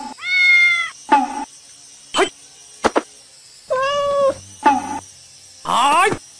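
A cat meowing three times, each call under a second long, with the last one rising in pitch near the end. A few short sharp clicks come between the calls.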